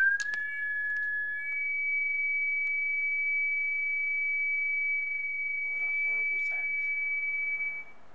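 A steady, high-pitched whistle-like tone held for about six seconds. It is preceded in the first second or so by a slightly lower tone and cuts off just before the end. A brief voice can be heard about six seconds in.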